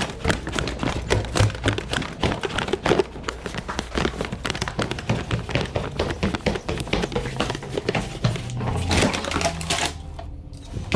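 Footsteps going up an indoor staircase, a dense run of taps and knocks, mixed with the rustle of a carried paper takeout bag.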